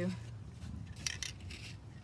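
Light handling sounds: a hand brushing over fabric on a wooden tabletop and a few small clicks and clinks as an aerosol can of spray adhesive is picked up, about a second in and again half a second later.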